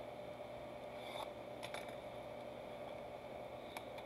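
Faint handling of a shrink-wrapped trading-card hobby box: a few soft clicks and crinkles of the plastic wrap as fingers pick at it, over a steady low hum.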